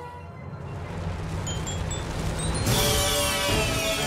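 Cartoon sound effects over music: a low rumble swells for nearly three seconds, then breaks into a sudden bright rushing burst with falling high sparkly tones as the treasure chest erupts with gold.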